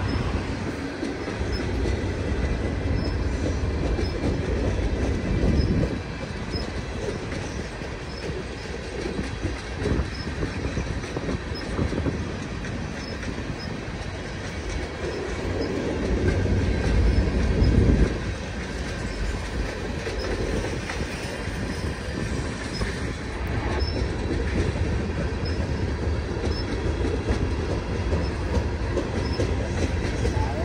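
Freight train's tank cars and covered hoppers rolling past, a continuous rumble of steel wheels on rail. It swells louder a little past halfway, then drops back suddenly a few seconds later.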